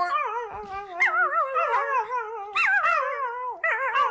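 Yellow Labrador puppy howling and whining in a run of long calls whose pitch wobbles up and down, one after another.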